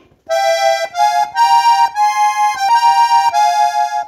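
Piano accordion playing a norteño melody in two-note harmony on the treble keys, held notes changing every half second or so, with short, soft bass notes pulsing underneath. It starts about a third of a second in.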